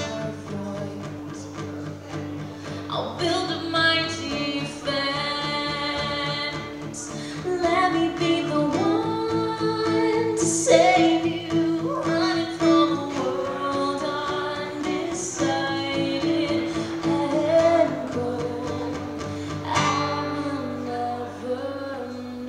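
Live acoustic rock song: a woman singing lead with a second female voice in harmony, over two strummed acoustic guitars.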